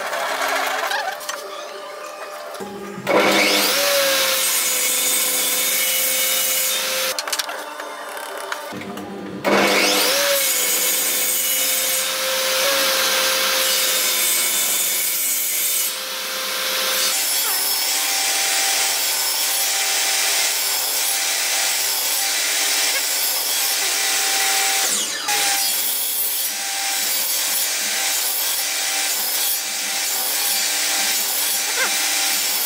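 Table saw running and cutting repeated kerfs across the end of a wooden block, the blade chewing through the wood on each pass to clear out a notch. The sound jumps up abruptly about three seconds in and again about nine seconds in.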